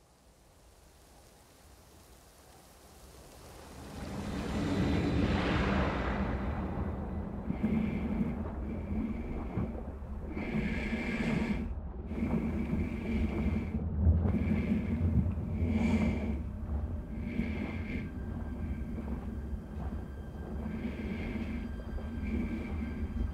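Heavy breathing through a full-face mask, one breath every second or two, over a low rumble that swells up from near silence during the first few seconds.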